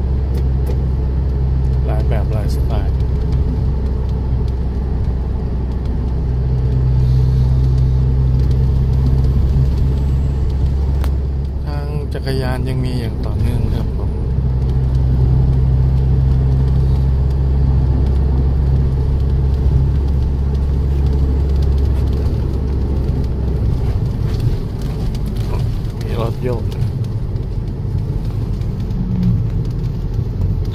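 Steady low drone of a car's engine and tyres on the road, heard from inside the cabin while driving.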